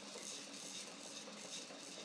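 Baby activity bouncer rattling and rustling as the baby moves and bounces in it, a quick run of small, faint knocks and scrapes from its plastic toys and frame.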